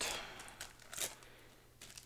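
Light rustling of a foil trading-card booster pack being taken from its box and handled, with a brief crinkle about a second in.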